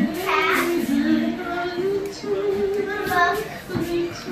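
A child singing, holding long steady notes one after another.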